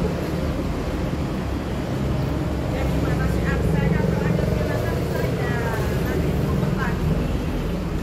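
A steady low rumble, with faint voices talking in the background through the middle of the stretch.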